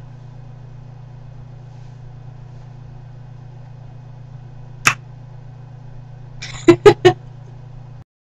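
A woman laughs briefly near the end, three quick bursts, over a steady low electrical hum; a single short sound comes about five seconds in.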